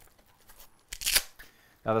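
Handling noise from a small black fabric knife pouch being turned over in the hands, with one short scratchy rustle about a second in.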